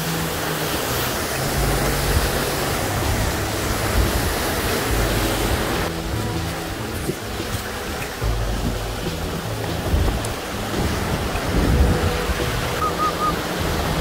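Steady rush of a mountain creek cascading over a rock slab, with wind rumbling on the microphone.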